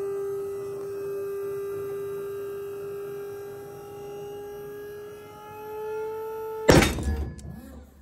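Pull-test rig running a steady whine that rises slightly in pitch as it loads a cord hitch, then a loud snap with a brief rattle about seven seconds in as the cord breaks at its figure-eight knot at about 11.4 kN, the hitch itself not slipping.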